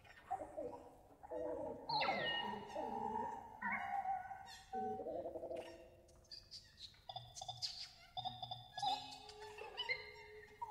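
Free improvised music: a wordless voice and violin in sliding, swooping pitches, with scattered percussive clicks. It is loudest in the first half and thins out after about six seconds.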